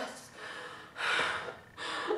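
A woman gasping and breathing hard in distress: a long breathy gasp about a second in and a shorter one near the end, with no voice in them.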